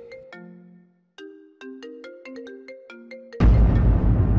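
A mobile phone ringtone plays a short tune of separate notes. About three and a half seconds in, loud dramatic music with heavy bass cuts in over it.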